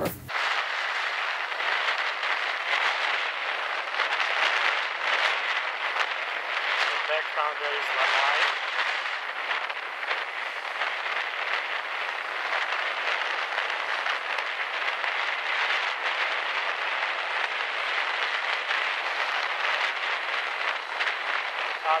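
Heavy surf breaking and washing ashore: a steady rushing noise of water with no deep rumble under it.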